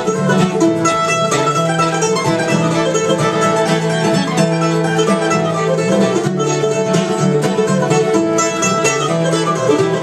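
Acoustic bluegrass trio playing an upbeat tune together: picked mandolin, strummed acoustic guitar and fiddle.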